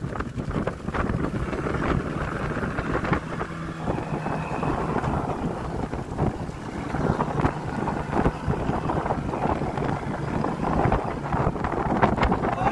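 Wind buffeting the microphone on a small fishing boat, over the rustle, knocks and splashes of a gill net being hauled in over the side.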